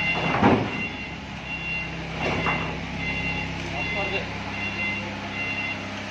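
A Toyota forklift's reverse alarm beeping, a high steady tone repeating about three times every two seconds, over its running engine as it backs up.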